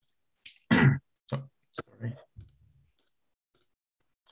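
A man's short wordless vocal sounds, a few brief voiced noises, mixed with sharp clicks, then a pause.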